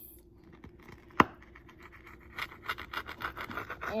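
Metal pizza cutter wheel rolling through a baked pizza crust: a scratchy crunching in quick strokes over the last second and a half or so, after a single sharp click about a second in.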